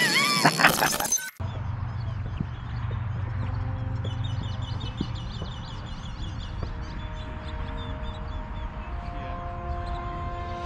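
A short logo sound effect with a crash plays for about the first second and cuts off abruptly. After it, wind rumbles steadily on the microphone by the lake, with faint bird chirps from about three and a half seconds in until near the end.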